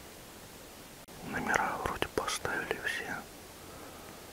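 A person whispering for about two seconds, starting about a second in, with a few sharp clicks among the words, over a faint steady hiss.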